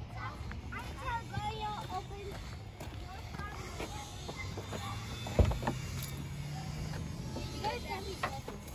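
Indistinct voices murmuring in the background, then one sharp, loud click about five and a half seconds in as the minivan's front door latch is opened.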